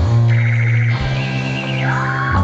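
Live rock band in a sparse instrumental passage with no vocals: a low bass note holds under a fluttering high tone, and a high note slides down in pitch near the end.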